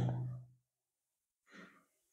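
The held end of a man's spoken word dies away in the first half second. Then it is nearly silent apart from one short, faint breath about a second and a half in.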